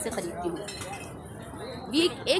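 Background bustle of an open-air market with a few light clinks, as a woman's voice trails off and then starts again at the very end.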